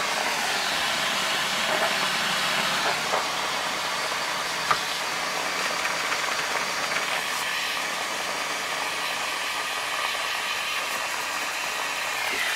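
Aerosol can of butane freezer spray hissing in one long steady spray onto a K-type thermocouple, chilling it well below freezing.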